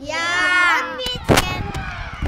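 A group of young boys shouting "Ja!" together in a drawn-out cheer lasting about a second, followed by a single brief thump.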